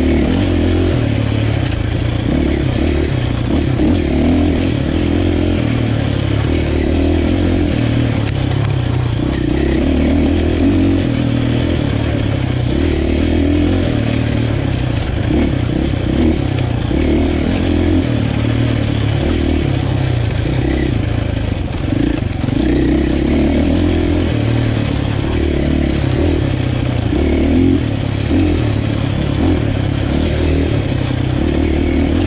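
Husqvarna 501 enduro motorcycle's single-cylinder four-stroke engine running under load, its note rising and falling over and over as the throttle is opened and eased off.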